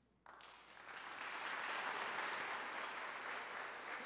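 An audience applauding. The clapping starts suddenly just after the beginning, swells over the first second, then holds steady.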